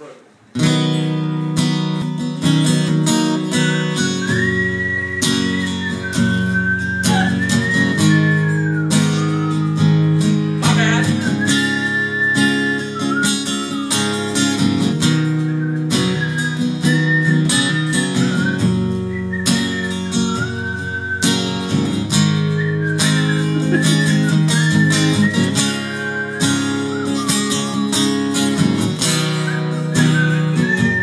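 Acoustic guitar strummed live, with a man whistling the melody into a microphone over it from about four seconds in.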